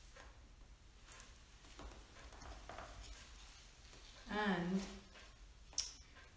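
Faint rustling and light taps as paper cut-out figures are moved across a felt underlay, then a woman's voice says a short word about four seconds in, and a small sharp click comes near the end.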